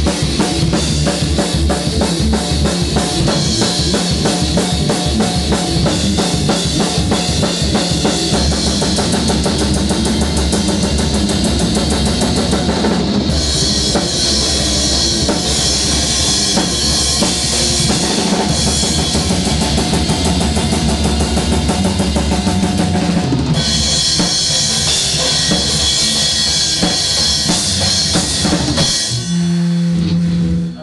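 Metal band playing instrumentally with no vocals: electric guitar over a loud drum kit with bass drum, snare and cymbals. The song changes section about 13 seconds in and again about 23 seconds in, with heavier cymbal wash in the later sections, and the band stops near the end.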